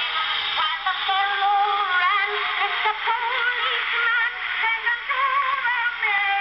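Edison cylinder phonograph playing a cylinder record through its horn: singing with a strong vibrato, thin and tinny, with almost no low end.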